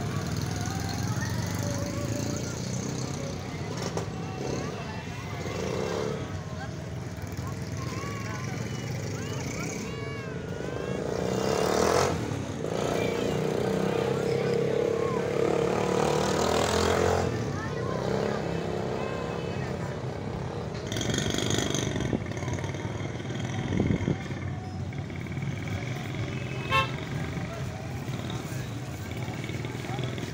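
Roadside street noise: passing vehicles and horns, with voices in the background. A louder held tone, likely a passing vehicle or horn, runs from about twelve to seventeen seconds in.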